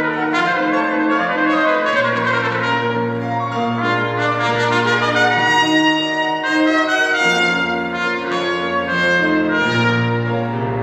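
Trumpet playing a melody in sustained notes over grand piano accompaniment.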